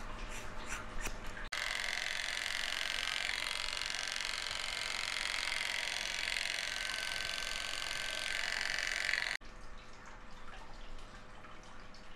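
Scissors snipping through thick banded ponytails. Then electric hair clippers run steadily through the hair for about eight seconds, starting and stopping abruptly, and are the loudest sound. Near the end a straight razor scrapes the lathered scalp in short strokes.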